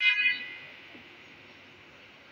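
A short, buzzy horn-like tone that starts suddenly and fades within about half a second, followed by a faint steady hiss.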